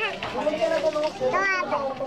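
Speech only: several voices chatting, with a high-pitched exclamation about one and a half seconds in.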